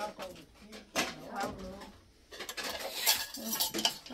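Dishes and cutlery clinking as chicken soup is served out into bowls, the clinks gathering in the second half.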